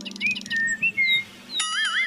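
Cartoon-style comedy sound effects: a few short chirpy whistles, then a warbling electronic jingle that starts about one and a half seconds in.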